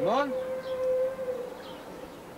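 A loud siren-like pitched call: a quick whoop that rises and falls, then one steady note held for about a second and a half.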